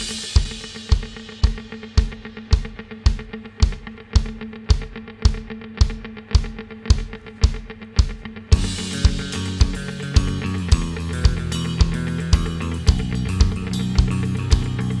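Indie rock song, instrumental section without vocals: a drum kit keeps a steady beat of about two hits a second over held guitar and bass tones. About eight and a half seconds in, the full band comes in louder and denser.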